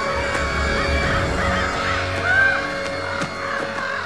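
Many overlapping bird calls, short calls rising and falling in pitch, over a low sustained musical drone with a deep rumble.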